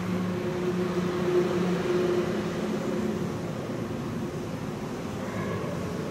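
Steady mechanical room hum. A low held tone sounds over it for the first two to three seconds, then fades.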